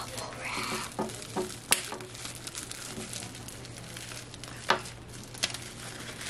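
Plastic packaging crinkling and rustling as it is handled, with scattered small clicks and knocks from a power cord being untangled, two of them sharper.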